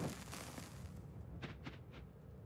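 Small torch fire going out: a faint fading hiss, with two faint crackles about a second and a half in.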